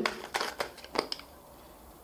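A few light clicks and taps of a plastic spray bottle being handled and lifted, in the first second or so.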